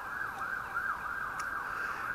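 A siren, heard faintly at a distance, with a pitch that rises and falls quickly, several times a second.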